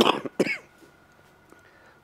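A person coughing: two short bursts in the first half second, then a quiet pause.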